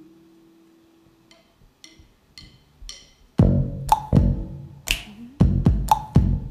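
A low held note fades out. Four light clicks about half a second apart count the song in, and about three and a half seconds in a live band comes in with punchy bass and drum hits.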